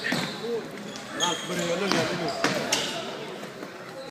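A futsal ball being kicked and bouncing on a wooden sports-hall floor: a few sharp knocks from about a second in, among players' shouting voices.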